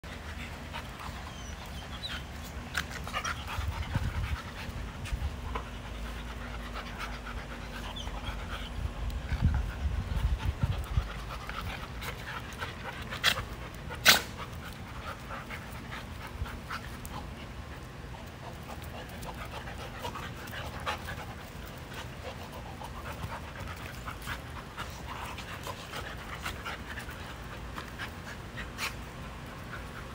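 A black Labrador retriever and an American bully puppy panting as they play-wrestle, with small scuffs and clicks throughout. Short low rumbles come about 4 s and 10 s in, and one sharp click about halfway through is the loudest sound.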